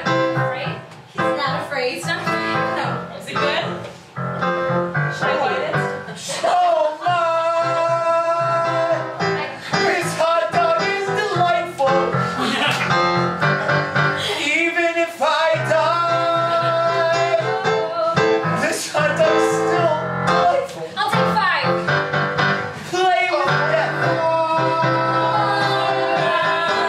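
An improvised musical number: several cast members sing held, sliding melody lines together over a live instrumental accompaniment that keeps going throughout.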